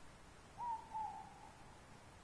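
An owl hooting, a pair of short notes with the second slightly lower, over faint background hiss.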